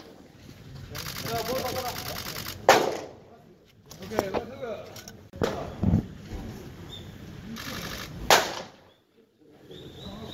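Pitched baseballs smacking into a catcher's mitt: two sharp pops about five and a half seconds apart, with voices in between.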